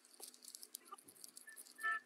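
Faint scraping of a disposable razor shaving off a moustache. Near the end comes a brief high-pitched tone.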